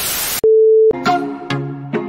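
A short burst of TV static hiss, then a steady test-card beep held for about half a second. From about a second in, the next music starts with short plucked notes.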